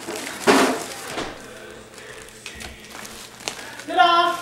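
Tissue paper rustling briefly about half a second in, followed by a few faint light clicks and knocks of small objects being handled.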